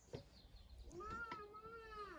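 A cat meowing once: one long drawn-out call that starts about a second in, rising and then falling in pitch. A few faint clicks sound around it.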